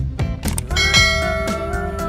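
Background music with a steady beat. About a second in, a bright bell-like chime rings out and holds over it: the notification-bell sound effect of an animated subscribe button.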